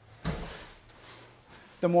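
A single thump of bare feet stepping down onto padded dojo mats during a karate kata, about a quarter second in.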